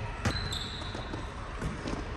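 A volleyball bouncing on an indoor court floor: one sharp bounce near the start and a couple of lighter knocks near the end, with a brief high squeak just after the first bounce.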